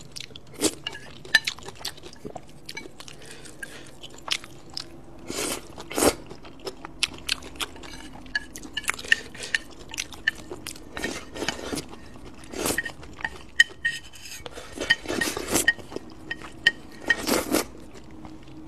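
Close-up eating sounds of spicy fried noodles: chewing and slurping, with chopsticks clicking and scraping against the bowl. There are many short clicks and several longer slurps throughout.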